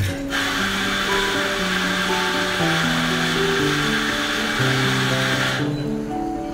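Electric espresso grinder running, grinding coffee beans into a portafilter: a steady whirring grind that starts just after the beginning and cuts off shortly before the end.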